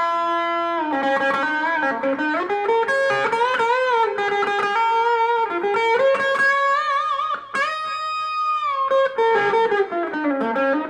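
Guild DeArmond Starfire semi-hollow electric guitar played through a small solid-state amp: a single-note lead line full of string bends and vibrato, with a long bent note held with vibrato near the end. The strings are freshly fitted and stretching under the bends.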